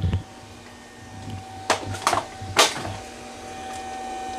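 Footsteps and camera handling as someone walks into a garage, with three sharp knocks about halfway through, over a faint steady high hum.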